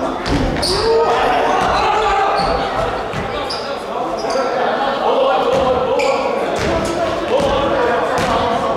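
A basketball bouncing on a wooden gym floor during play, with players' voices calling out, all echoing in a large hall.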